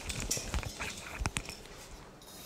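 Close handling noise from a man moving and reaching down: irregular rustling with several sharp clicks and knocks, the loudest pair about a second and a quarter in.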